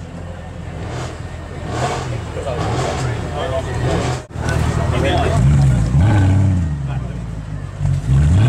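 Mercedes-Benz C63 AMG's 6.2-litre V8 through an iPE aftermarket exhaust, revved while the car stands still: a run of quick throttle blips rising and falling in the first half, then longer, louder revs after a sudden break about four seconds in.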